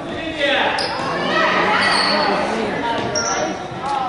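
Basketballs bouncing on a hard gym floor, with several voices calling out over one another in the echoing hall.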